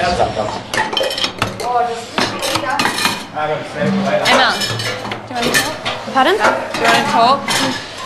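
Dishes and cutlery clattering and clinking in many quick, irregular knocks, as a dinner table is cleared after a meal.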